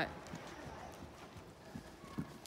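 Hoofbeats of a cantering horse on sand arena footing: soft, low thuds, faint and irregularly spaced.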